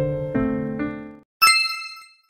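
Soft piano music plays a few notes and fades out about a second in. Then a single bright ding rings out and decays, a chime sound effect at the switch to the answer card.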